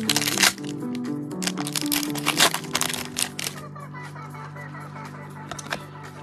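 Background music with long held notes, over the crackle and snap of a foil trading-card pack being torn open and cards handled, densest in the first three seconds and thinning out after.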